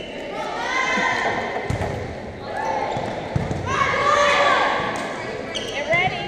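Volleyball rally in a large gym: the ball is struck with dull thumps, twice in the middle of the stretch, amid shouting voices of players and spectators.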